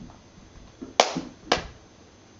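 Two sharp taps about half a second apart, the first the louder, with a couple of soft thumps just before them.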